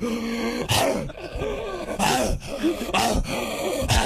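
A man's voice imitating a vicious dog, barking and snarling in several short bursts.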